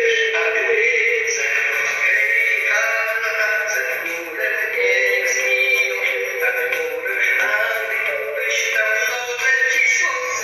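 Music with no words, an instrumental passage of a singalong song. A voice-like lead with vibrato carries the melody over chordal accompaniment.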